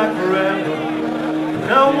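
Live rock band performing, the vocalist holding one long sung note for over a second before starting a new line near the end.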